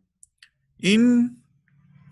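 A man's voice calling out "in", a breathing cue in bhastrika breathing, about a second in. Two faint short clicks come just before it, and a faint low hum starts near the end.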